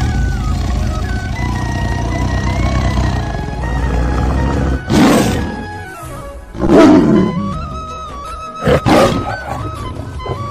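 Background music with a steady melody, overlaid with tiger roar sound effects: a loud roar about five seconds in, another near seven seconds, and two short ones close together near nine seconds.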